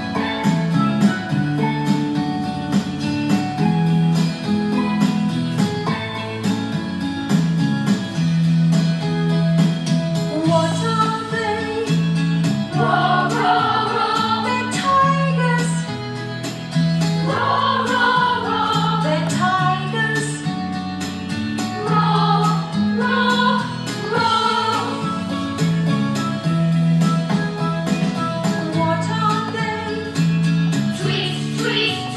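A recorded children's song from an English coursebook: an instrumental opening over a steady, repeating bass line, with singing voices coming in about ten seconds in.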